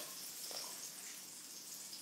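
Pencil lead scratching faintly on notepad paper as a line is drawn upward.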